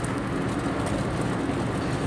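Steady road noise from a moving car heard inside its cabin: tyre roar and engine, even and unbroken.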